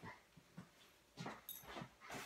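A few faint, short sounds from a dog, with near silence between them.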